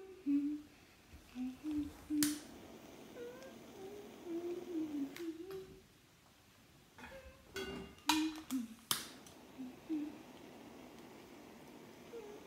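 A voice humming a slow, wandering tune in a small room, with a few sharp clicks and knocks about two seconds in and again around eight to nine seconds in.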